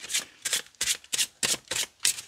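A Halloween Tarot card deck being shuffled by hand, the cards slipping from one hand to the other in short strokes about three times a second.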